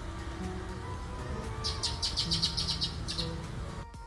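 A fast bird trill of short high notes, about eight a second, lasting roughly a second and a half around the middle, over soft background music.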